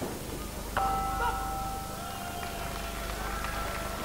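Boxing ring bell struck to end the round, its clear tone ringing on and slowly fading for about three seconds.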